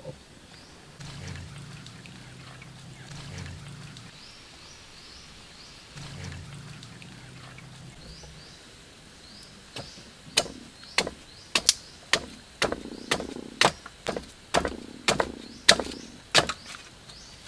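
A machete blade chopping into a green wooden stick, about a dozen sharp strikes at roughly two a second in the last six seconds. Before that there is a low, steady hum with faint repeated high chirps.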